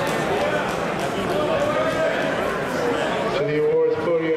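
Several voices talking and calling out at once in a large hall, with one voice standing out more clearly near the end.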